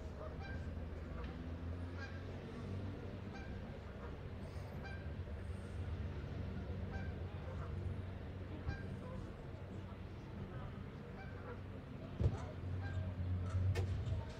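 Geese honking faintly and repeatedly over the low murmur and hum of an outdoor crowd. A single thump comes near the end.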